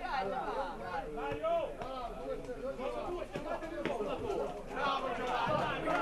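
Several voices calling and chatting at once, overlapping: players and spectators at the pitch.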